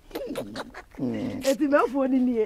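Speech only: people talking in a conversational interview, with voices rising and falling in pitch.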